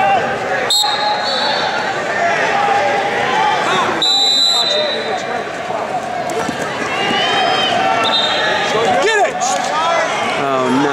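Coaches and spectators shouting in an arena, with a referee's whistle giving one short blast about four seconds in and fainter whistle blasts near the start and near the end.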